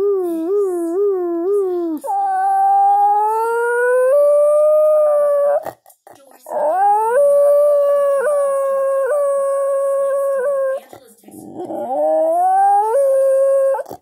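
Basenji yodelling: a wavering, warbling call, then three long howls that each rise in pitch, with short breaks between them.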